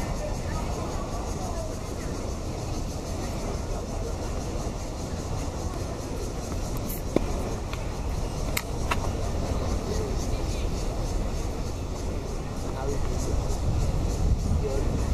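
Tennis balls struck by racquets on an outdoor court: a few sharp pops about halfway through, two of them close together, over a steady low rumble of open-air background noise.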